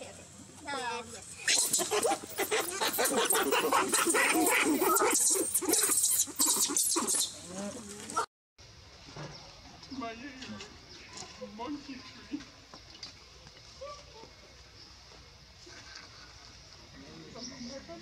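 Young macaque screaming and shrieking loudly and without a break for about eight seconds, then the sound cuts off suddenly, leaving only faint, scattered calls.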